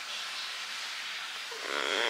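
Faint hiss, then about one and a half seconds in a woman lets out a pained groan through closed lips.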